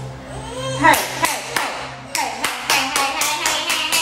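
A quick run of sharp smacks, starting about a second in and speeding up to about five a second near the end, with a voice over them.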